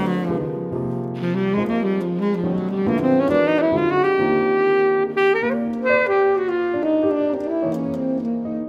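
Instrumental music: a saxophone playing a melody over piano accompaniment, the line climbing about three seconds in.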